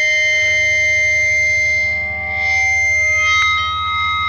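Distorted electric guitar ringing out in a sustained feedback drone with effects, the held tones shifting about three and a half seconds in, as the intro to a powerviolence track.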